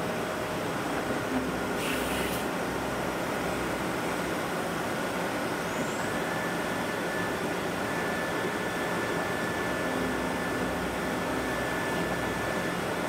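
Willemin-Macodel 408MT CNC mill-turn machine running a cutting cycle behind its closed door, flood coolant spraying against the window: a steady machine wash with faint spindle tones. A brief hiss comes about two seconds in, and a higher steady tone joins about six seconds in.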